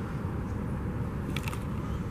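Steady low rumble of outdoor background noise, with a couple of faint clicks about three-quarters of the way through.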